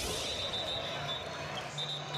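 Live basketball arena sound cutting in abruptly: crowd murmur and court noise, with a faint steady high tone through most of it.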